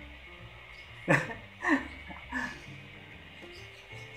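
Soft background music with three short, loud cries about half a second apart, starting about a second in, each falling in pitch.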